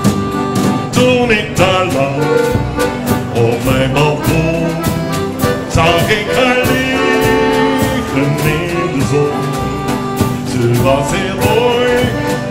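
Live accordion and acoustic guitar playing a Dutch folk-pop song to a steady percussion beat, with a man singing into a microphone.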